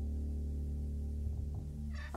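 Upright felt piano holding a low, muffled chord that rings on steadily, with a short high squeak near the end as the sound begins to fade.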